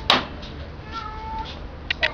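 A sharp knock or rattle just at the start, then, about a second in, a short, thin, high-pitched mewing cry that rises slightly.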